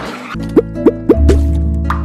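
TV channel ident jingle: a short swish, then four quick cartoon plops, each rising in pitch, leading into a held music chord with a deep bass note.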